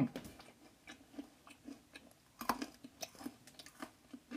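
Someone chewing jalapeño peanut brittle with the mouth closed: faint, irregular crunches and clicks, one louder crunch about two and a half seconds in.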